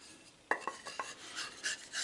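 Light clicks and knocks of cut pine boards being handled, a quick cluster of taps about half a second in and a few fainter ones after.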